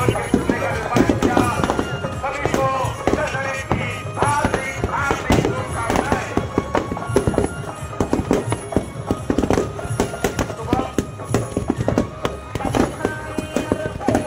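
Firecrackers going off in rapid, irregular cracks and pops, over loud music and voices.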